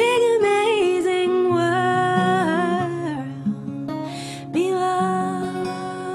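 A woman singing a slow song over her own acoustic guitar, her voice sliding between notes and then holding a long note near the end.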